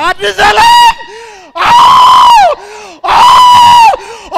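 A man screaming into a handheld microphone: after a couple of short rising cries, three long, very loud, high-pitched screams, each held level and then dropping in pitch as it breaks off.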